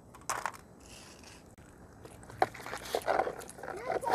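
Dry walnut shells cracking and crunching as they are broken apart: one sharp crack near the start, then a run of crackly crunching in the second half.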